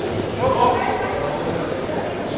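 Indistinct voices echoing in a sports hall, with a short raised call about half a second in over steady background chatter.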